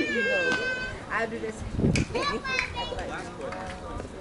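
Several people's voices calling out and chattering at the ballfield, opening with a long high-pitched yell, too jumbled to make out words.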